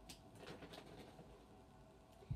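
Near silence, with a few faint clicks and rustles in the first second as small toys and their packaging are handled.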